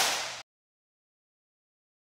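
Hand clap by two men clapping together on the count of three: one loud, sharp clap with a short room echo. It cuts off abruptly about half a second in.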